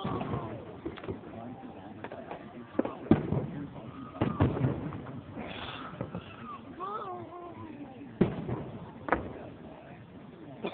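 Aerial fireworks shells bursting overhead: a series of sharp bangs at uneven intervals, the loudest about three seconds in, with more near the middle and toward the end.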